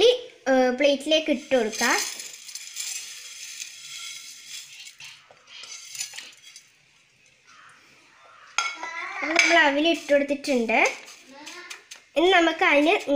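Dry flattened rice (aval) poured and scraped off a ceramic plate onto a paper plate: a rustling, hissy scrape lasting a few seconds, then a few small taps and scrapes.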